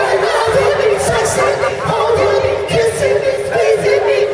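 Male R&B vocal group singing in multi-part harmony live through a concert PA, with a long held note under the moving lead lines.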